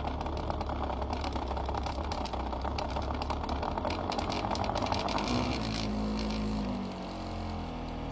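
A standing wave machine running in a tub of water: a steady low hum under rapid, dense splashing and rattling of the agitated water. About six or seven seconds in, the rattling eases and the hum's pitch shifts.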